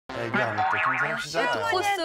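A short comic sound effect with a quick wobbling rise and fall in pitch, laid under a voice speaking, in the first second or so.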